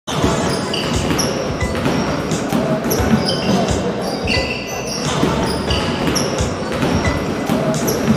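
Basketball game on a hardwood court: sneakers squeaking repeatedly in short high chirps several times a second, with a ball bouncing.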